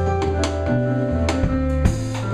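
Live jazz-funk band playing an instrumental passage: Nord Electro 4 keyboard chords, electric bass holding low notes and a drum kit with regular hits.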